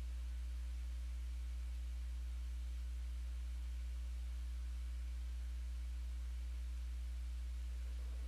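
Steady low electrical hum with a few fainter higher tones over a light hiss, unchanging throughout; no distinct prying or tool sounds stand out.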